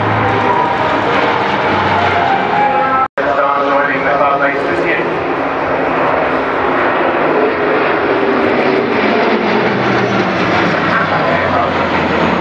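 Turboprop military transport aircraft flying a low display pass, with a steady propeller and engine sound. After a short break about three seconds in, an Airbus A400M's four turboprops are heard, their pitch falling slowly as the aircraft passes.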